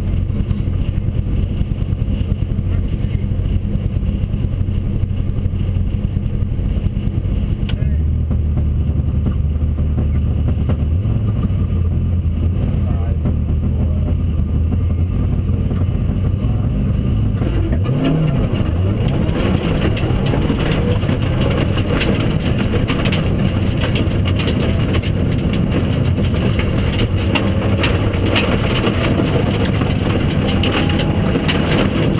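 Rally car engine heard from inside the cabin, idling at the stage start, then held at raised revs from about eight seconds in. About eighteen seconds in the car launches and accelerates hard on loose gravel, with stones rattling against the underbody.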